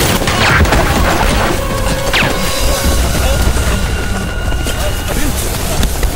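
War-film battle soundtrack: continuous heavy booms of explosions and bursts of gunfire under a music score.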